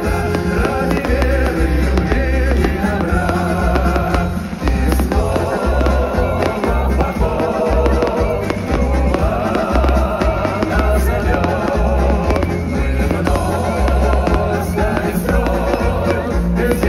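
Loud music with a heavy, pulsing bass beat and singing, over a fireworks display: shells bursting and crackling overhead throughout.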